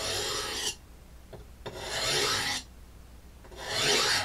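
A knife's steel edge scraped hard across a hard object in three long strokes about two seconds apart, deliberately dulling the blade.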